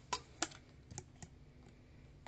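Four light, sharp clicks or taps in two close pairs, over a faint steady room hum.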